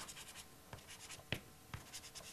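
Pastel stick dabbing and scratching on textured pastel paper in short, faint strokes, with a few sharper ticks as it touches down, the clearest about a second and a half in.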